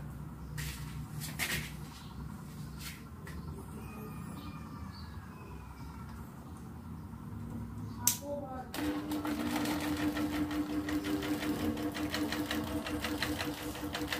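Small hanging fan with a single plastic blade switched on with a sharp click about eight seconds in, then running with a steady motor hum and a fast, even ticking rattle that grows louder.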